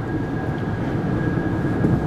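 Steady road and engine noise heard inside a car cabin at highway speed, mostly a low rumble, with a faint steady high tone running through it.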